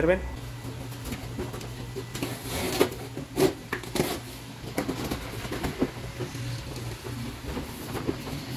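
A cardboard box being opened by hand: packing tape pulled off and the flaps lifted, giving several short rips and scrapes of tape and cardboard.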